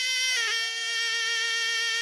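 Tunisian zokra, a wooden double-reed shawm, holding one long, loud note that steps down slightly in pitch about half a second in.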